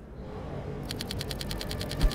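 Rapid, even ticking at about ten ticks a second, starting about a second in.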